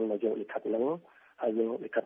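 Speech only: a radio news narrator's voice in Khmer, with a short pause about halfway through.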